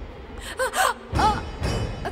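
A young woman's few short, high gasping cries of shock, over soft background music.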